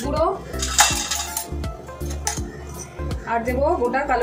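A steel spoon clinking and scraping against small steel cups and a steel mixing bowl as spices are spooned out, with the loudest scrape about a second in. Background music plays throughout.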